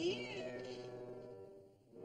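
A single cat-like meow that rises and then falls in pitch at the very start, over sustained orchestral music that fades away near the end.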